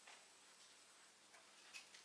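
Near silence: faint room tone, with a few faint clicks in the second half.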